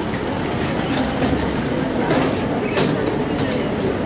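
Airport baggage carousel running with a steady rumble and a few light clacks, under the chatter of the waiting crowd.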